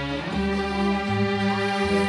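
Music with long held notes.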